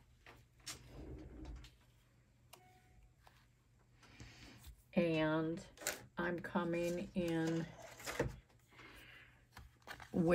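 A woman humming a few short wordless notes about halfway through, over faint rustling of a plastic stencil being handled, with a single sharp knock near the end.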